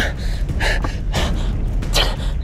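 A man's groan trailing off, then about three sharp, ragged breaths and gasps through the searing pain of a giant desert centipede bite.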